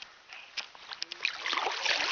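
Water splashing and trickling close to the microphone, with scattered sharp clicks, swelling into a louder rush of splashing about one and a half seconds in.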